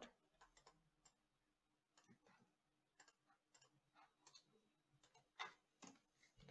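Near silence with faint, sparse clicks of a computer keyboard and mouse, about a dozen spread irregularly; a slightly louder click comes near the end.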